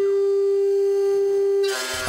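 CNC router spindle and end mill milling aluminium, giving a steady high whine at one pitch. The whine cuts off suddenly shortly before the end.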